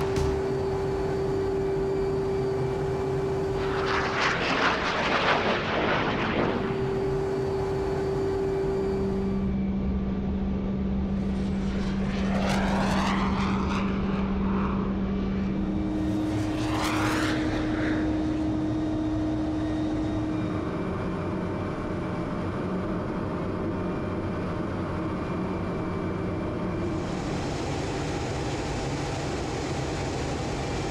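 Steady noise inside a fighter-jet cockpit in flight, with three short hissing rushes. A steady electronic tone sounds over it, stepping between pitches a few times before it stops about two-thirds of the way through.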